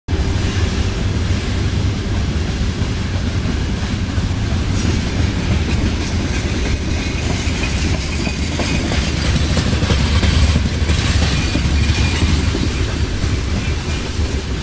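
Freight train of open wagons passing on the tracks: a loud, steady noise of wheels running over the rails.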